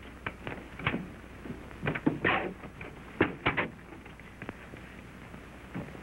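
Irregular knocks and thumps on wood, like footsteps on boards and a door, with a short scraping noise about two seconds in. A steady low hum from the old film soundtrack runs underneath.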